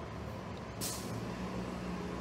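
Transit bus engine running steadily, with one short, sharp hiss of air brakes about a second in.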